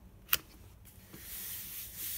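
A short click, then about a second in a hand starts rubbing flat over a sheet of cardstock, a steady papery hiss. The cardstock is being burnished down onto a paint-covered gel printing plate to pull a print.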